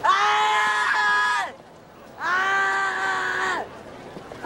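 A person's voice crying out in two long, held screams, each about a second and a half, with the pitch dropping at the end of each.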